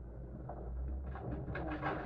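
Steady low rumble of a heavy engine, with a bird cooing over it in the second half.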